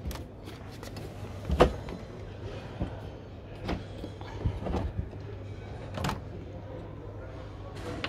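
Clicks and knocks of plastic twist-lock latches being turned and a motorhome's exterior storage-locker flap being opened: several separate clicks, the sharpest about one and a half seconds in, over a steady low hum.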